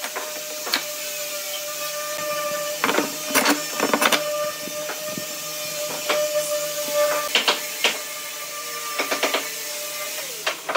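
Steel pipe clamps being slid and tightened onto a wooden panel: irregular sharp clicks and knocks of the metal clamp jaws on the pipe and against the wood, in small clusters, over a steady workshop hum.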